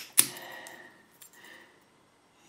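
A brass padlock handled in the fingers close to the microphone: two sharp metallic clicks at the start, then faint rubbing and a small tick.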